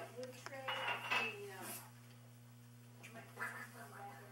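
A few light clicks, then a louder clatter of clinks about a second in that includes a short ringing clink. A steady low hum runs underneath, and brief voices come in near the end.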